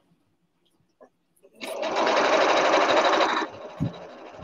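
Electric sewing machine stitching: a fast, steady run of stitches starts about one and a half seconds in, stays loud for about two seconds, then carries on more quietly.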